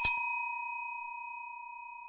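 Subscribe-button sound effect: a click and a single bell-like ding, which rings on at one steady pitch and fades slowly.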